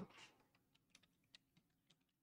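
Faint computer keyboard typing: a few scattered key clicks.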